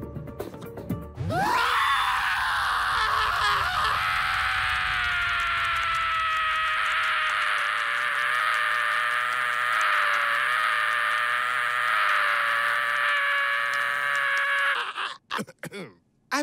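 A cartoon character's long, drawn-out scream: it swoops up about a second in, holds for roughly thirteen seconds while drifting slightly lower in pitch, then stops suddenly.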